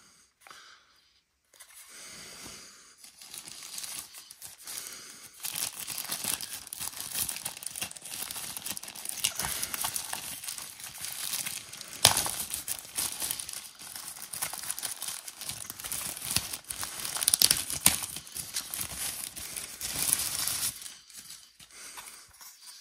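Thin white protective wrapping crinkling and rustling as it is pulled off a small drone by hand. It starts about two seconds in and goes on almost to the end, with a few sharper, louder crackles.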